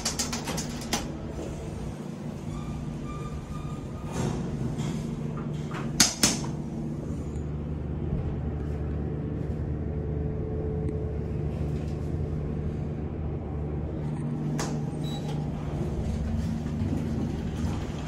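Passenger elevator in use: button clicks at the start, then a sharp knock about six seconds in as the doors shut, and the car travelling with a steady low hum. A click near the end comes as it stops.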